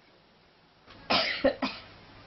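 A person coughing: three quick coughs in a row about a second in.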